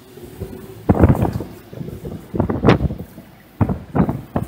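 Gusting south wind buffeting the microphone aboard a boat on choppy water, in irregular loud blasts from about a second in, over a rushing noise of the boat and water.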